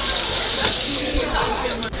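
Soda fountain pouring Coke into a cup: a steady rush of liquid with a fizzing hiss, cut off abruptly near the end.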